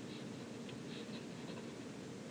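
Faint scratching of a pen writing by hand on a sheet of paper.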